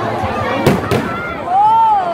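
A firework bang about two-thirds of a second in, over the voices of a crowd watching the display. Near the end one voice gives a loud, drawn-out call that rises and falls.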